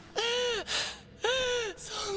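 A young man's voice in an anime clip letting out two drawn-out, strained cries, about half a second each, the pitch rising and then falling in each.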